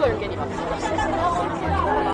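Speech: a woman talking among other voices, over quiet background music.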